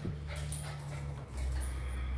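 A small dog's claws clicking and pattering as it moves about on a hard floor, over a low steady hum that drops lower a little past a second in.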